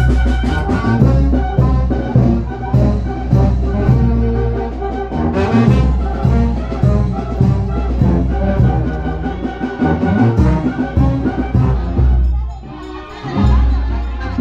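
A village brass band playing a lively tune in a street procession, with a steady beat in the bass. The music dips briefly near the end, then picks up again.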